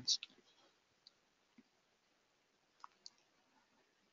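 A few faint computer mouse clicks, spaced out, with two close together near the end.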